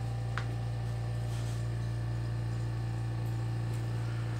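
Steady low hum of a portable air conditioner running, with one faint click about half a second in.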